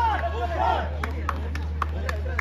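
Players and spectators shouting and calling out, then a few sharp claps or hand slaps spaced through the second half, over a steady low hum.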